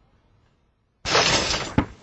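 Basketball shot dropping through the hoop's net with a sudden loud rattling crash lasting under a second, ending in a single sharp knock.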